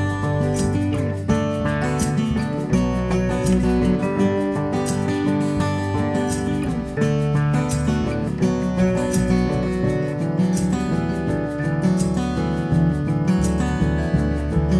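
Acoustic band playing a slow song: acoustic guitars strummed and picked over a plucked upright double bass walking through low notes.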